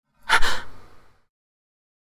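A single sharp, breathy gasp about a quarter of a second in, lasting under a second.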